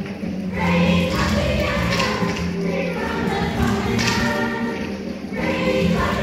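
A group of children singing a song together with instrumental accompaniment.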